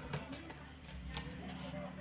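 Quiet room with a faint, low voice murmuring, and one light tap about a second in.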